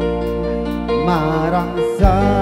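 Live band music: held keyboard chords over a steady bass, with a vocal line, sung with vibrato, coming in about a second in.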